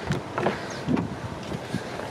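A few light clicks and knocks over wind buffeting the microphone, as a car's front door is opened.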